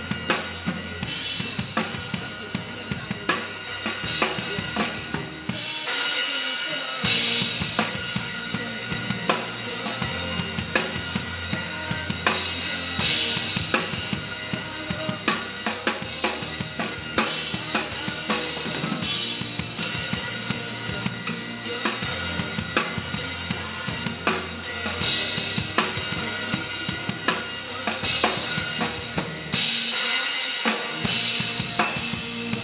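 Acoustic drum kit played live, with kick drum, snare and cymbals in a steady pop beat, over the song's recorded backing track.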